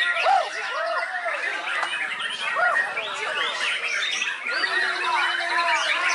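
Young white-rumped shama (murai batu) singing a dense, unbroken run of quick, varied whistles and chirps.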